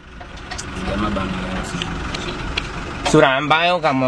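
Minibus engine and road rumble heard from inside the crowded cabin, swelling over the first second and then steady; a man's voice comes in about three seconds in.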